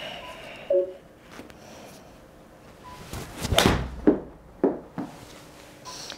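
An 8-iron strikes a golf ball off an indoor hitting mat about three and a half seconds in, one sharp impact with the ball thudding into the simulator screen. Two lighter knocks follow within about a second.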